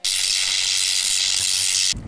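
A steady, high-pitched hiss of TV-static-like white noise used as a transition sound effect, starting suddenly and cutting off abruptly after about two seconds.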